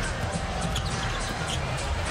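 Steady arena crowd noise with a basketball being dribbled on a hardwood court.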